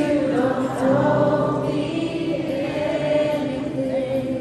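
Live worship band playing, with voices singing long held, wavering notes over acoustic guitars, violin, bass guitar and drums.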